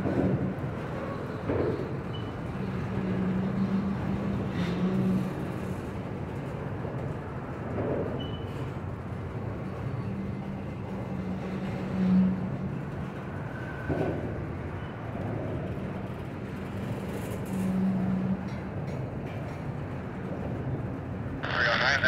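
Tank cars of a freight train rolling slowly past, a steady rumble of steel wheels on rail with an intermittent low hum and a knock every few seconds as the trucks pass.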